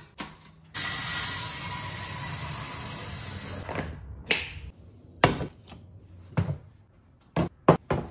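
A rushing pour lasts about three seconds, then comes a run of sharp clicks and knocks from plastic kitchen containers and a rice cooker lid being handled.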